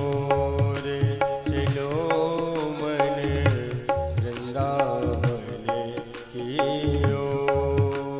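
Devotional bhajan music: a tabla plays a steady rhythm of deep bass strokes and sharp treble strokes under a sustained melody on an XPS-10 keyboard.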